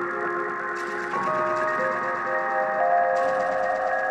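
Dark lo-fi glitch electronic music played live on Roland SP-404 samplers and a modular synth. Sustained chords shift to new notes about a second in, and a hissy noise layer comes in just before and cuts off near the end.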